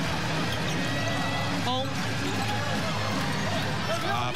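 A basketball bouncing on a hardwood court during live play, over steady arena crowd noise with music underneath.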